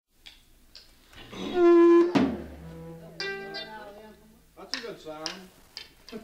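Studio tape between takes of a recording session: scattered knocks, then a loud held musical note about a second and a half in, cut off by a sharp knock. Short stretches of voices and stray notes follow over a low steady hum.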